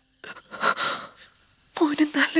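Crickets chirping in a steady pulsing trill, with a breathy, tearful sob about half a second in. A woman starts speaking near the end.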